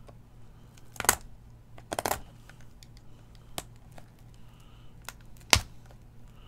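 Scattered sharp clicks and taps of fingers and a blade on a shrink-wrapped cardboard card box as the tough plastic wrap is being broken open, about six clicks with the loudest near the end, over a low steady hum.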